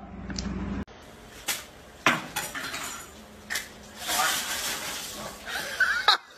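A few sharp clinks and knocks spaced about a second apart, followed by a stretch of hissing noise.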